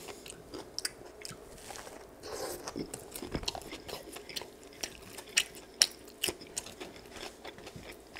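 Close-miked chewing and biting into a double-meat BMT Subway sub: a run of short, sharp crunches and mouth clicks, the loudest a little past the middle.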